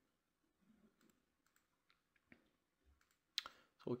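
Near silence with a few faint clicks of a computer mouse, the sharpest one about three and a half seconds in.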